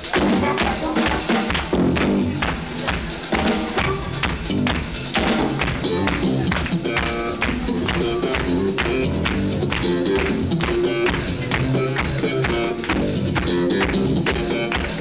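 Live band playing a blues-funk song, with a steady beat of percussion over the full band.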